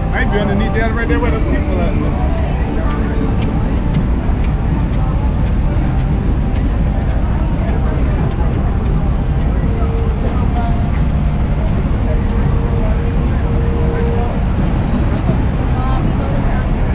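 Street ambience of a busy boulevard: steady traffic rumble with passers-by talking nearby. A faint high whine comes in twice, a few seconds each time.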